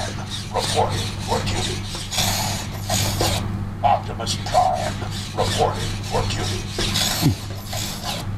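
Robosen Optimus Prime robot toy walking, its servo motors whirring and grinding in short bursts with each step.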